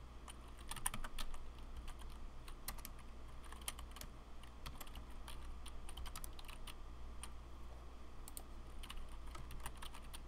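Typing on a computer keyboard: irregular runs of key clicks with short pauses between, as a shell command is entered.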